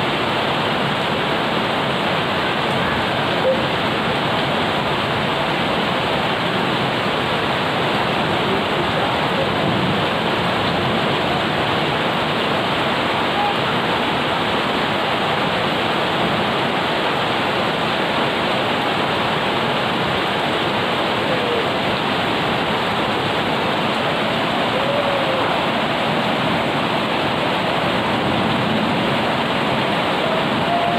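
Steady rain falling on garden plants and a wet paved yard: an even, unbroken hiss.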